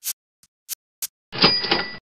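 Sound effects for a subscribe-button animation: a few quick clicks, then about 1.3 s in a bright ringing ding over a noisy crash, like a notification bell or cash-register chime.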